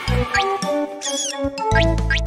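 Children's cartoon soundtrack: light background music with low beats and held notes, over which quick rising whistle-like sound effects and a high squeaky cartoon-creature squeak about a second in accompany a hopping bunny.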